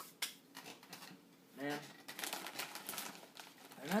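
Foil snack bag crinkling and crackling as it is picked up and handled, a dense run of crackles in the second half.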